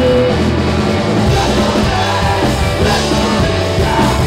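A rock band playing together at a rehearsal, loud and dense, recorded live in the room on a mobile phone's microphone. A long held note fades out right at the start.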